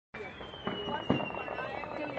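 Firecrackers going off: two sharp pops, about two-thirds of a second and a second in, the second the louder, over a thin high whistle that slowly falls in pitch.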